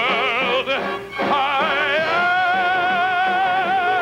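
A male voice sings a Broadway show tune over instrumental accompaniment, with a wide vibrato. About halfway through he takes up one long held note.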